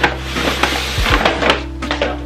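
Paper shopping bag rustling and crinkling as a pillow is pulled out of it, mostly in the first half, over background pop music with a steady beat.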